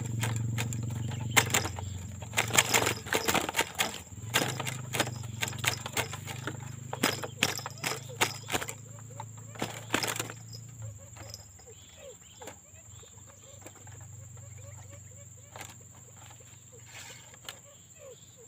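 A trapped wild quail fluttering and beating its wings against the wire of a small cage trap: a rapid, irregular run of flaps and rattles over the first ten seconds that dies down to faint rustles in the second half.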